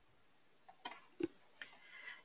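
Near silence on a webinar audio line, with a few faint, brief clicks in the second half.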